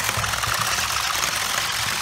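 Two Kamigami toy robots' small motors running and their plastic legs rattling rapidly and steadily against the wooden tabletop as the two robots push against each other.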